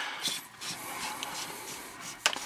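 Flashlight tail cap being screwed onto the battery tube by hand: a soft, steady scraping of the threads turning.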